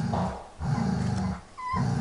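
Dog's low growling rumble in pulses each under a second long, about a second apart, with one short high puppy whimper about one and a half seconds in.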